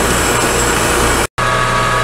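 Horizontal metal-cutting bandsaw running steadily, sawing through stainless steel bar stock. A little over a second in it cuts off suddenly, and after a brief gap the steady hum of a metal lathe takes over.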